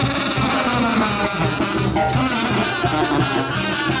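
Mexican banda, a brass band with drums, playing a son.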